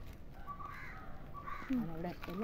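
A bird calling outdoors: three short calls about half a second apart. A person's voice comes in near the end.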